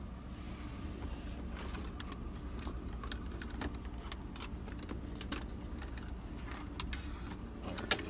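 Scattered clicks, knocks and rustles of hands rummaging through cables and items around a car's centre console, over a steady low hum from the car.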